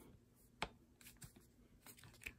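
Near silence broken by a few faint clicks from handling the plastic adjustable stock of a crossbow, with one sharper click about half a second in.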